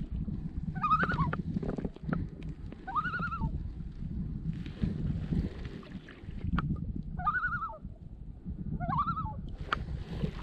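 A common loon calling four times, short quavering tremolo calls that rise and fall, over the low wash of a packraft paddle in the water and wind on the microphone.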